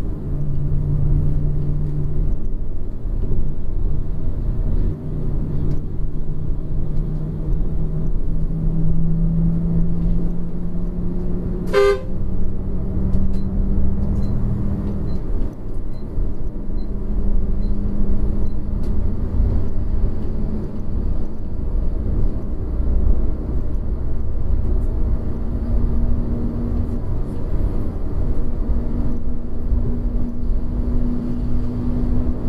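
Yutong Nova coach driving, heard from inside the cabin: a steady low rumble of engine and road, with an engine tone that climbs slowly as the coach gathers speed. A sharp click comes about twelve seconds in, followed by a few seconds of faint, regular ticking.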